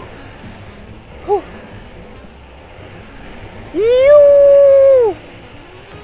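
A rider's voice letting out one loud, drawn-out, high-pitched "woo" about four seconds in that rises, holds for about a second, then drops away. A short vocal sound comes about a second in. Steady road and wind noise runs under both.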